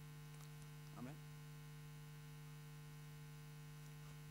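Near silence with a steady low electrical hum on the recording, and one faint brief wavering sound about a second in.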